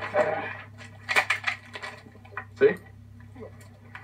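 Light clatter and knocks of objects being handled, a quick cluster of them about a second in, over a steady low hum.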